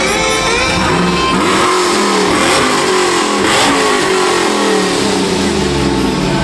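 Lowered Chevrolet Silverado pickup's engine revved several times in quick succession, the pitch rising and falling, then settling lower near the end.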